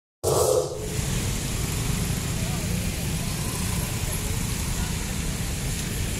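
A brief logo sound effect opens, then gives way under a second in to steady outdoor street noise with a heavy low rumble and faint voices.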